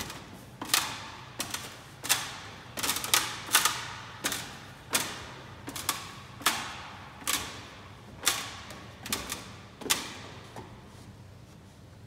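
Footsteps knocking on the rungs of a wooden ladder as someone climbs, a series of sharp knocks roughly one or two a second, each ringing on briefly in the echoing space among the pipes. The knocks stop a little before the end.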